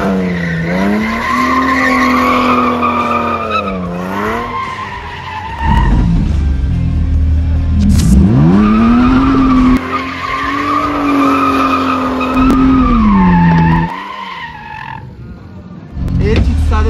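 Drift car engine revved hard while sliding with tyres skidding: the engine note climbs steeply to a high, held pitch, sags and fades about four seconds in, then climbs and holds again for a second slide before dropping away near the end.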